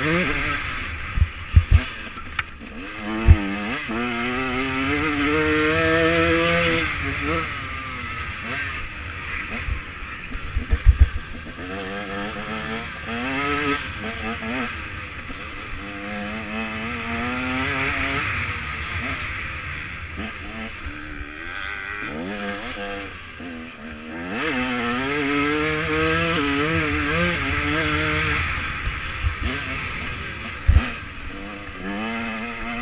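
KTM 150 SX two-stroke motocross engine being ridden hard, its pitch climbing and dropping back again and again as it is revved out and shifted. A few sharp thumps come in the first few seconds and a cluster about eleven seconds in.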